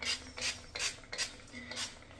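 Pump spray bottle of Redken Extreme CAT protein treatment misting onto wet hair: about five short sprays, a little under half a second apart.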